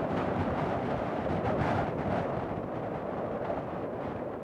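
Steady rushing wind with a low rumble, with no music or voice over it.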